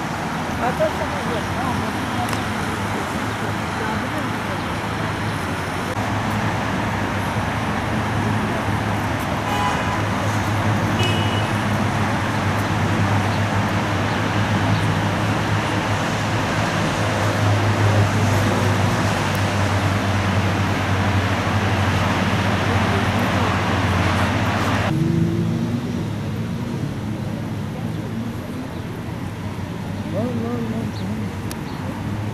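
Steady city road traffic, a continuous rumble and hiss of passing vehicles, with a couple of brief high tones about ten seconds in. The hiss drops away suddenly a few seconds before the end.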